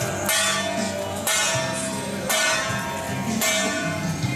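A metal gong struck in a steady beat, about once a second, each stroke ringing on until the next, over music.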